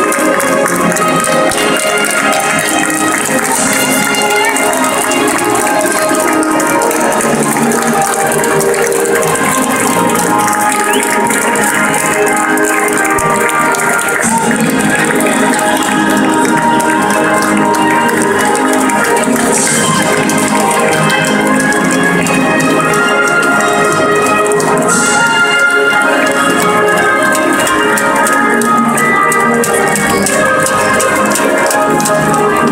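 A national anthem played over a stadium sound system, with the long echo of a large stadium.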